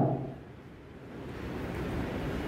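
A man's amplified voice trailing off at the start, then steady, unpitched background noise in the pause, growing a little louder toward the end.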